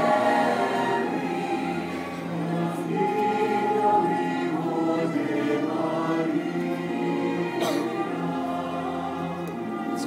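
Large massed choir singing long, held chords that shift slowly.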